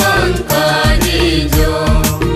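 Tutsa song: a voice sings a wavering melodic line over backing music with steady bass notes and a drum beat.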